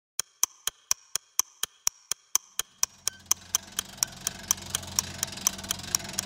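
Clock-style ticking sound effect, fast and even at about four ticks a second, with a low drone swelling in beneath it from about three seconds in and slowly growing louder.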